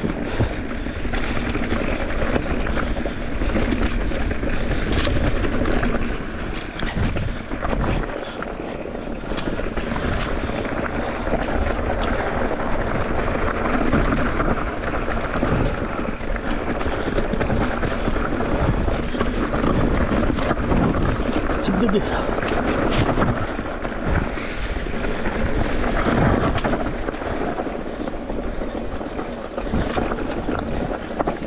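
Mountain bike descending a rough singletrack: wind buffeting the action camera's microphone, with tyres running over stones and the bike rattling and knocking over bumps throughout.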